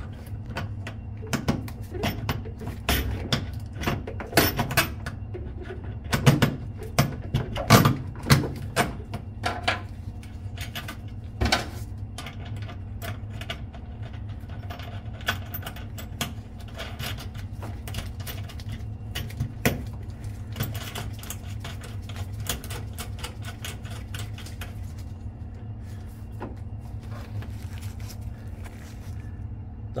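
Metal clicking and clinking of a nut, washer and hand tool on a terminal stud as a copper cable lug is fastened down. The knocks are thick in the first dozen seconds and sparser after, over a steady low hum.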